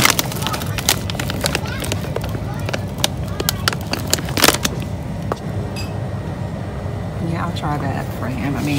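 Products being handled on a store shelf: scattered clicks and knocks of bottles, and a louder crackle of a plastic snack bag about halfway through, over a steady low store hum.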